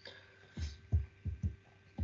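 Four short, low, dull thumps about a third of a second apart, picked up by a computer microphone.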